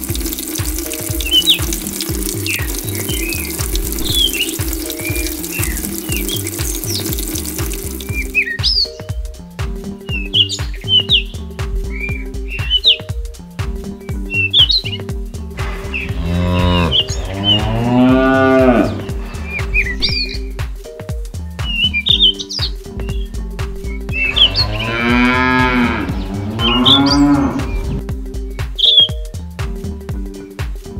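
A cow mooing twice, each a long call of about three seconds, one in the middle and one near the end, over background music with a steady beat and high chirps. For the first several seconds a thin stream of water trickles into a small basin.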